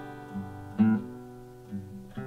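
Steel-string acoustic guitar being picked, its notes ringing on over one another, with a stronger plucked note a little under a second in.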